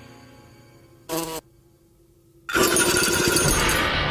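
Film soundtrack: music fades out, a brief pitched sound effect sounds about a second in, then after a near-silent gap a loud, noisy sound effect starts suddenly about two and a half seconds in and keeps going.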